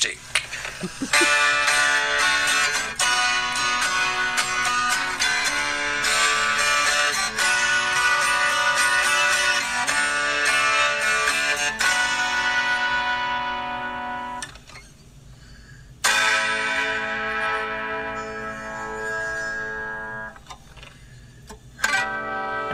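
Zemaitis twelve-string acoustic guitar played back from a recording: a run of picked notes and chords, stopping about two-thirds of the way through, then one last chord left to ring out.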